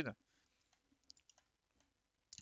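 A few faint computer mouse clicks, scattered over about a second, against near silence.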